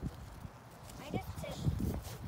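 Horse's hooves thudding softly on a dirt paddock, a few irregular steps, with a faint voice about a second in.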